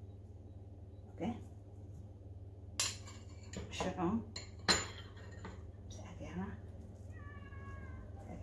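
Metal fork clinking and scraping against a ceramic bowl and plate, with two sharp clinks about two seconds apart, as cheese is scraped out onto the plate. A few short voice-like sounds come in between, and a brief high tone sounds near the end.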